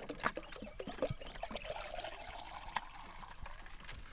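A chicken drinking from a plastic bucket of water: small irregular dips, taps and trickling splashes as its beak goes into the water.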